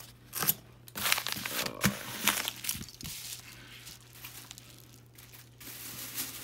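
Crinkling and rustling of paper and plastic packaging being handled, in irregular bursts over the first three seconds and quieter after.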